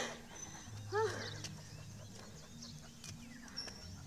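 A dog giving two short whining yelps, each rising then falling in pitch, about a second apart.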